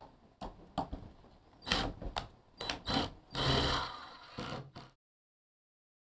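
Cordless drill driving screws into wood in short bursts, the longest about a second, among sharp clicks and knocks from handling the drill and the wooden pieces. The sound cuts off suddenly about five seconds in.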